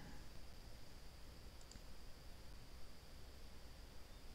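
Faint computer mouse clicks, two in quick succession about one and a half seconds in, over quiet room tone.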